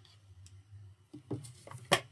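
Oracle cards being handled while one is put back into the deck: faint soft taps, then one sharp click near the end.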